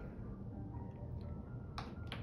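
A single sharp click from an ultrasound machine's controls near the end, as measurement calipers are placed, over a steady low hum.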